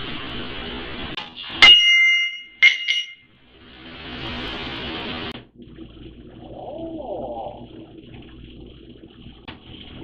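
A katana blade ringing as it is drawn: two sharp metallic rings about a second apart, then a rushing hiss lasting about two seconds.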